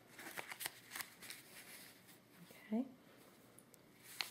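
Soft rustling and small clicks of velveteen craft ribbon and craft wire being handled and wrapped by hand. The sound is busiest in the first second and a half, then fades.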